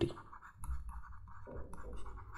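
Stylus scratching faintly across a writing tablet as words are handwritten, over a low steady hum.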